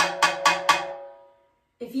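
Drumsticks striking the metal shell of a timbale four times in quick succession, about a quarter-second apart, the metal ringing on and fading away.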